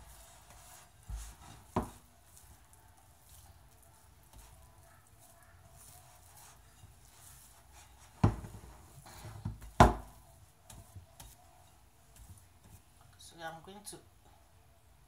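Pizza dough being worked by hand in a glass mixing bowl: soft rubbing and pressing, with a few sharp knocks against the bowl, one about two seconds in and two more around eight and ten seconds in.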